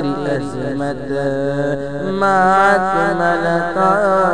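Naat sung by a solo voice drawing out long, wavering melismatic notes, with a new held phrase starting about halfway through, over a steady low drone.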